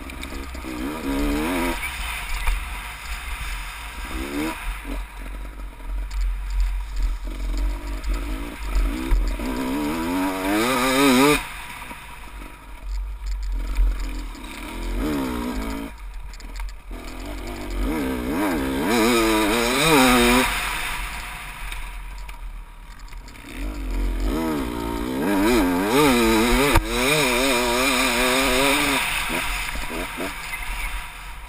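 Dirt bike engine revving hard, its pitch climbing and falling again and again as the rider works the throttle and gears, with brief lulls where the throttle is shut.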